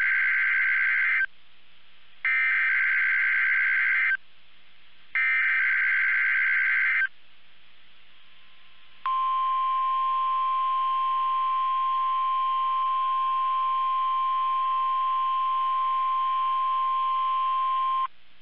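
NOAA Weather Radio SAME alert sequence: three bursts of screeching digital header data, each about two seconds long with a second's gap between, then the steady 1050 Hz warning alarm tone held for about nine seconds. It is sounded as the weekly test of the weather radio's warning alarm.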